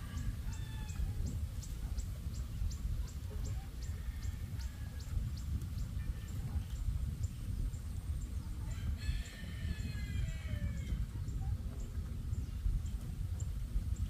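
A rooster crows, most clearly once about nine seconds in, over a steady low rumble of wind on the microphone. A fast, high ticking, about four or five a second, runs through the first few seconds.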